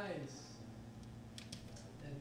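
A few quick key clicks on a computer keyboard about a second and a half in, after a short falling vocal sound right at the start.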